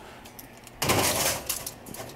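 A sheet pan and oven rack sliding into an oven: one short metallic scrape that starts sharply about a second in, followed by a few small clicks.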